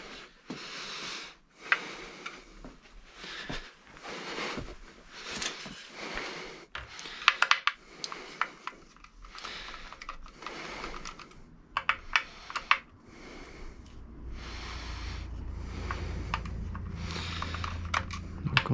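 Screwdriver working out the small screws of the fork covers on a Xiaomi M365 electric scooter: irregular light clicks and scrapes of the bit in the screw heads. A low rumble of street noise builds in the last few seconds.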